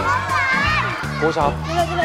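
Young children shouting and cheering in high voices over background music with a steady bass line.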